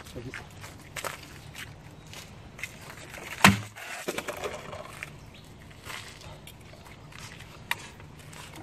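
A thin wharncliffe knife made from a machine hacksaw blade slashing through a water-filled plastic bottle in one swing: a single sharp crack about three and a half seconds in, the loudest sound here. A low steady hum runs underneath, with a few lighter knocks.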